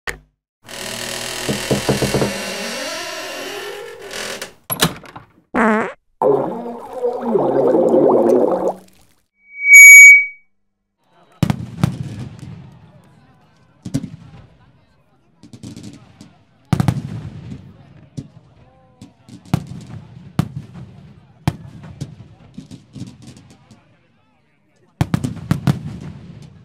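A run of separate sound effects: several seconds of mixed noisy and warbling sounds with a few clicks, then a loud short beep about ten seconds in. From about a second later, fireworks: a string of bangs one to three seconds apart, each trailing off in crackle and rumble.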